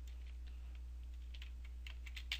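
Faint clicks from a computer keyboard and mouse, a few of them from about halfway in, over a steady low hum.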